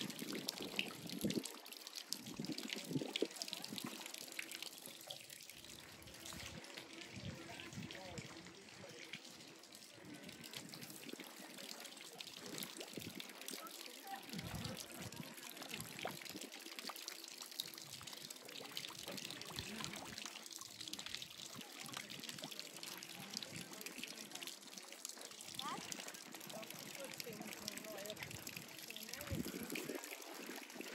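Running water trickling and splashing continuously, fairly faint.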